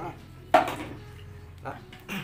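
A single sharp knock about half a second in, from handling a coiled rubber extension cord and its plug.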